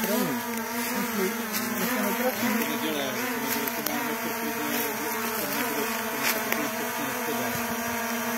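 Small quadcopter drone hovering low, its propellers buzzing with a whine that keeps wavering up and down in pitch as the motors adjust.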